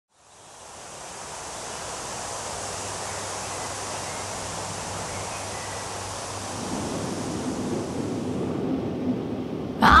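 A steady rushing hiss, like wind or surf, fades in over the first two seconds and then holds. After about six and a half seconds it grows fuller lower down, and near the end it loses its highest part, leading into the song.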